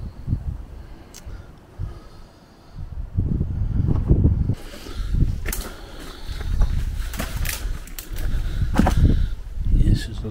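Footsteps over loose stone rubble and through undergrowth, with an uneven low rumble on the microphone and a few sharp clicks and snaps underfoot.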